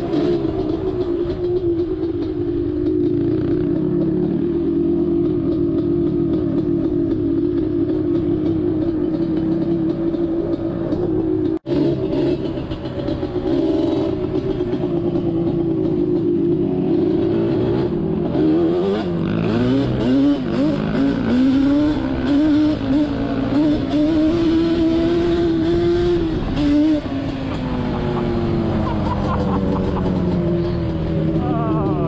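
Yamaha Banshee ATV's two-stroke twin engine running under way on a dirt road, its note mostly steady, then rising and falling with the throttle in the second half. The sound cuts out for an instant about twelve seconds in.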